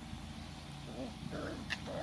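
Young Doberman puppies yipping and whining in play, a few short calls from about a second in. A single sharp click comes just before the end, over a steady low background rumble.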